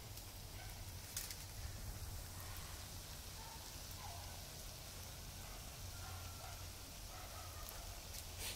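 Fritters deep-frying in a wok of bubbling oil: a faint, steady sizzle, with a sharp click about a second in and a few faint short calls in the background.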